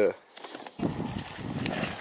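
Mountain bike tyres rolling and crackling over dry, hard dirt as the bike comes down the trail, starting about a second in.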